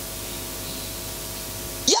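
Steady electronic hiss like static, with a faint steady hum under it. It cuts off suddenly near the end as a man's voice comes back in.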